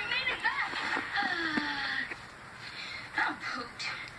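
Cartoon character dialogue playing from a television and picked up through the room by the recording device.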